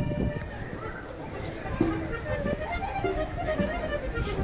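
A norteño band sound-checking on stage: a few short, isolated instrument notes sound over a murmur of voices rather than a song, while the stage sound is still being fixed.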